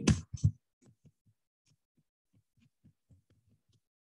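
Faint computer keyboard keystrokes, a quick run of soft taps about five or six a second, as a short phrase is typed, after a voice trails off at the start.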